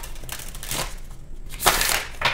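New tarot deck being riffle-shuffled: the stiff new cards rustle as the halves are worked together, then a quick loud flutter of cards near the end as they riffle into each other. The cards are a little stiff and just starting to loosen up.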